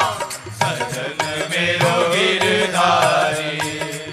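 Hindi devotional bhajan music: a sung melody over a steady drum beat.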